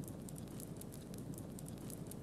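Low flames of a prescribed burn spreading through dry leaf litter, a faint steady crackling with many small pops.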